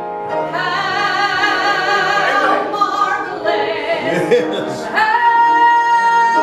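A woman singing a gospel song solo, holding a long steady note from about five seconds in.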